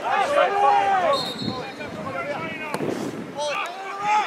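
Men shouting at a football match, with one long drawn-out call about a second in, then a couple of sharp thuds of the ball being kicked near the end.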